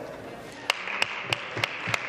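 Applause from a chamber of people clapping: a steady patter of many hands with sharp single claps standing out at even spacing, about three a second, from about half a second in.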